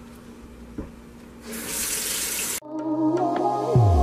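Kitchen faucet starts running water into a stainless steel sink about a second and a half in, then the water sound cuts off abruptly after about a second as background music begins.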